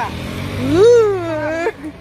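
A woman's long drawn-out vocal exclamation, rising and then slowly falling in pitch, over a steady low hum of engines and traffic.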